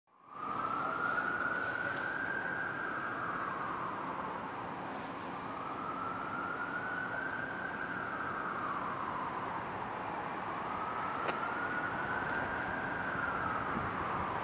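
Emergency vehicle siren on a slow wail, its pitch rising and falling about every five seconds, over steady street background noise.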